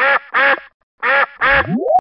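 Duck quacking four times in two pairs of quacks, followed near the end by a rising swoop tone.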